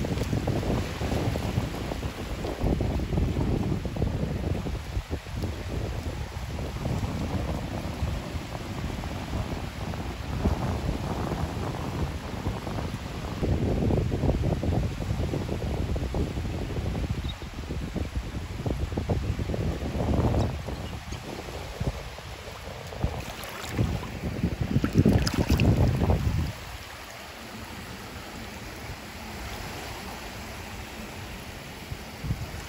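Wind buffeting the microphone in gusts over small waves washing on a sandy beach. About four seconds before the end it drops suddenly to a quieter, steady wash.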